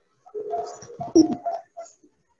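A low cooing call from a bird, lasting about a second and a half.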